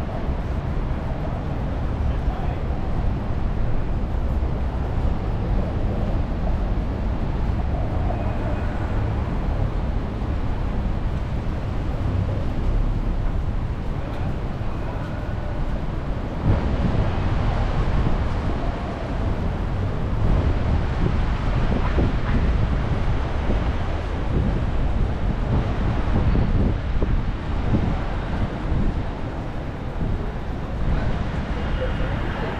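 City street ambience: a steady low rumble of passing traffic, with wind on the microphone and snatches of passers-by's voices.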